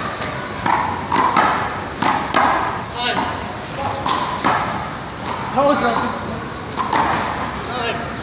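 A small rubber ball struck by hand and hitting a concrete play wall and the court floor: a string of sharp slaps and thuds, irregularly spaced, with voices in the background.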